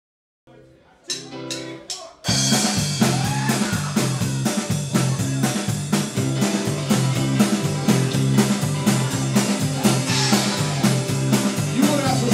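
Rock band playing live: a quiet lead-in with a few sharp hits, then drum kit and electric guitar come in together about two seconds in and play a steady, loud instrumental intro with a driving beat.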